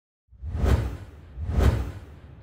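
Two whoosh sound effects of a logo intro sting, the second about a second after the first, each swelling and fading with a deep low rumble underneath.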